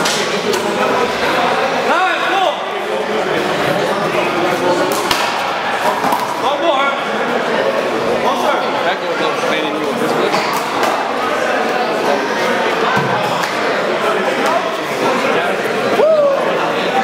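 Several men talking and calling out in a large hall, with an irregular handful of sharp smacks of a handball off the wall and hands during play.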